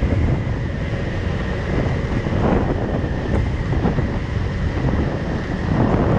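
Wind buffeting the microphone over the running engine and road noise of a Kymco Like 125 scooter riding at speed, with a faint steady whine on top.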